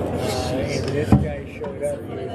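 Voices talking in the background on an indoor handball court, with one sharp smack of a handball striking the court about a second in.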